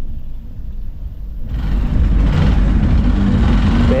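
Single-cylinder engine of a Hero XPulse 200 dirt bike running with a low rumble, then getting louder about a second and a half in as the rider opens the throttle on the dirt track, with a rush of noise over the engine.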